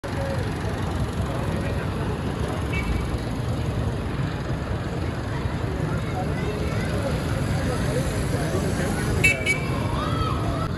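Busy street ambience: a steady rumble of traffic and motorcycle engines with scattered voices of people around, and a short horn toot near the end.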